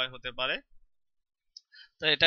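A man speaking briefly, cut off about half a second in, then silence with a few faint clicks near the end.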